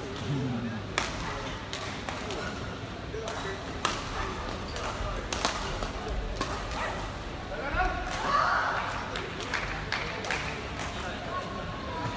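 Badminton hall ambience: a steady background of crowd voices, with scattered sharp clicks of shuttlecocks being struck by rackets.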